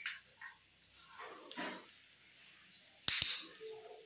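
Two sharp clicks about a sixth of a second apart, about three seconds in, followed at once by a short burst of noise. Fainter soft noises come earlier.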